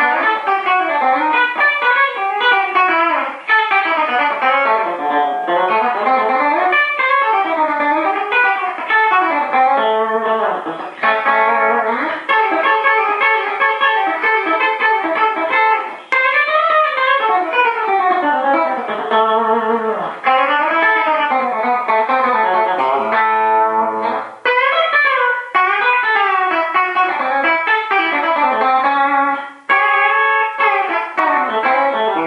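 Electric guitar played solo on a Gibson Custom Shop '57 Les Paul Junior reissue fitted with a Seymour Duncan Custom Shop '78 Model pickup, through a Deluxe Reverb amp with a touch of compression and overdrive. It plays continuous single-note runs that climb and fall, with a held chord about three quarters of the way through.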